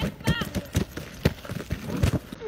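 Irregular clicks and knocks, several a second, with a brief voice about a third of a second in.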